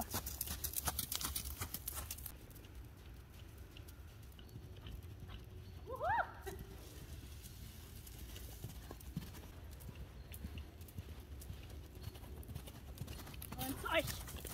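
Hoofbeats of a horse cantering on a sand arena, loudest in the first two seconds as it passes close, then fainter as it moves away. There is a short rising call about six seconds in.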